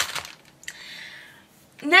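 Craft-supply packaging being handled on a table: a sharp click, then a soft rustle lasting under a second.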